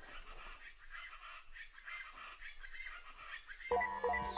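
Faint, repeated squeaky chirps, then near the end a sudden, loud sequence of electronic beeps: a sci-fi targeting sound effect in the soundtrack.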